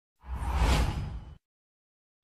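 A whoosh sound effect for a news logo transition, about a second long, with a deep rumble under it, swelling and then fading away.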